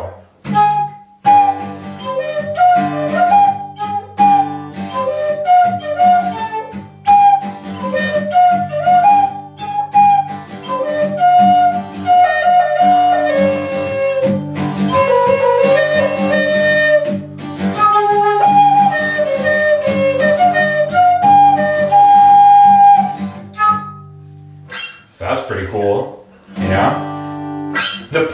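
A wooden Peruvian bird flute in G minor plays a pentatonic solo melody over acoustic guitar chords; the duet stops about 24 seconds in.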